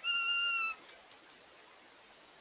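Northern goshawk giving one drawn-out call of under a second, holding its pitch and dropping slightly at the end. A few faint clicks follow.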